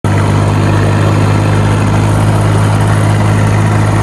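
Tractor engine running at a steady speed while the tractor drives along the road, a constant low drone with no change in pitch.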